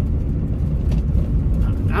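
Steady low rumble of a running vehicle, heard from inside its cab.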